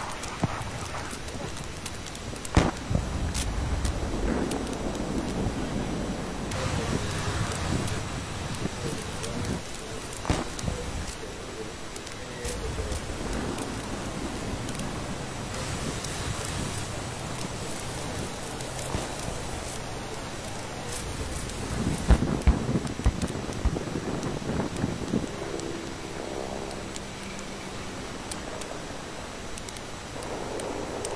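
Military field recording: a steady rushing noise and low rumble, broken by sharp blasts from weapons fire, one about two and a half seconds in, one about ten seconds in, and a quick cluster about twenty-two seconds in. Near the end a short pitched engine hum comes in.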